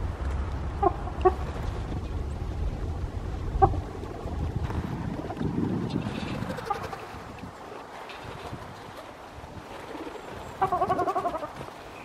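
Bird calls: a few short single calls early, then a quick run of calls near the end, over a low rumble in the first few seconds.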